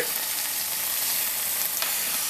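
Freshly baked deep dish pizza sizzling in its hot pan: a steady, even hiss of sauce and cheese still cooking against the metal.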